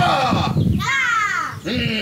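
A man's voice giving loud, harsh shouted cries, three in a row, the middle one falling steeply in pitch, caw-like.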